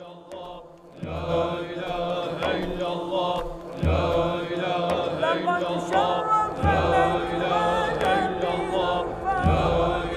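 A group of voices chanting together in unison, with a deep low hit about every three seconds, starting about a second in.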